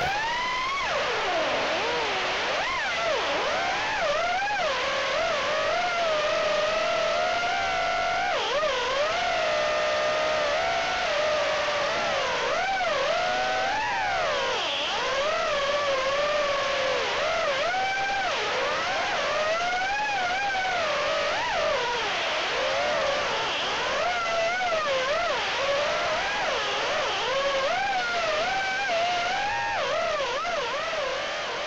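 BetaFPV HX115 HD 3-inch quad's brushless motors and propellers whining in flight, heard from the onboard Runcam Split Nano camera. The pitch swoops up and down constantly as the throttle changes through turns and punches, over a steady hiss of air.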